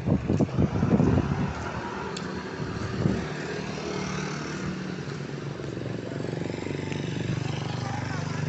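A motor vehicle's engine running steadily as it passes along the street, growing a little louder toward the end and fading just after. The first second or so holds several loud low thumps.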